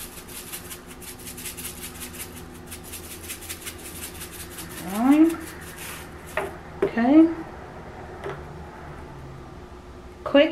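Seasoning shaken in quick rattling strokes from a plastic shaker bottle over raw pork chops for about the first six seconds. Two short rising vocal sounds come about halfway through and a couple of seconds later.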